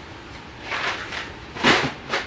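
Two soft, brief handling swishes, about a second apart, as a plastic organizer case of leather stamps is moved off the workbench.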